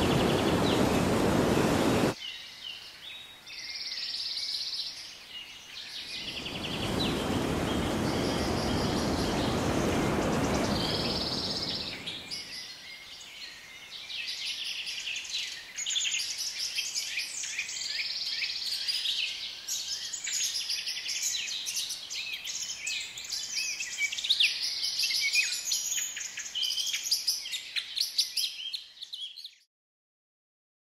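Many birds chirping and singing together in a dense chorus of short calls. A rushing noise cuts off about two seconds in and swells again from about six to twelve seconds. Everything stops abruptly just before the end.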